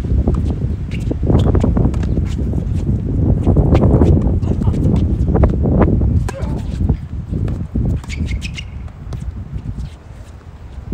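Tennis rally on a hard court: a ball struck by racquets several times, with sharp knocks of shots, bounces and shoe steps. A loud low rumble runs under the first six or seven seconds and then eases.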